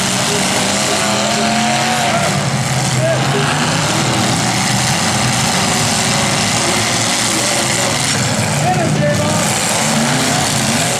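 Engines of several 1980s demolition-derby cars running and revving together, loud and continuous, their pitch rising and falling as the cars maneuver.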